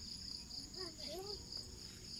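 Insects chirring in a steady, high pulsing trill, about four to five pulses a second, with a thin steady higher tone above it.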